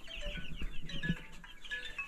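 A flock of broiler chicks cheeping together, many short high peeps overlapping without a break.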